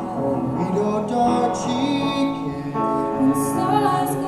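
A man and a woman singing a slow ballad duet over piano accompaniment, their voices amplified through microphones.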